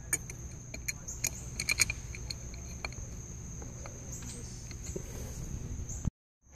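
Light metallic clicks and taps of an adjustable wrench being fitted around a Hurst shifter ball to unscrew it, scattered over the first few seconds, with a steady high-pitched whine underneath.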